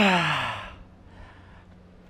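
A man's strained exhale voiced as a short groan, its pitch falling over about half a second, from the exertion of a resistance-band chest rep near the end of a hard set; then quiet.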